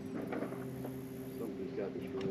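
Electric trolling motor running with a steady low hum, with a faint voice and a few light ticks over it.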